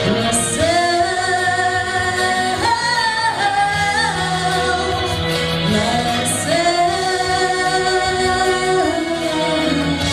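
A woman singing into a microphone over instrumental accompaniment, in two long phrases of held, sliding notes without clear words.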